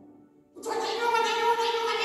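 A man's voice through the church's microphone and loudspeakers breaks a short pause about half a second in and holds one long, slightly wavering note, like a word drawn out in song.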